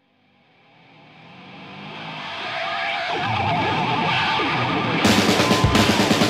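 Opening of a hard rock track: electric guitar fades in from silence over the first few seconds, then drums and the full band come in loud about five seconds in.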